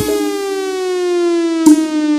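A single sustained siren-like synthesizer tone gliding slowly downward through a break in the forró music, with a short click near the end.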